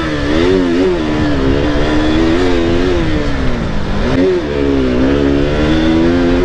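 KTM sport motorcycle's single-cylinder engine, heard from the rider's seat while riding at street speed, revving up and easing off again and again as the throttle and gears change. The engine note drops low about four seconds in, then climbs back up.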